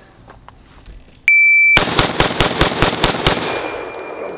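Shot-timer start beep, then an M1 Garand semi-automatic rifle firing eight rounds in quick succession, about five shots a second, emptying its clip.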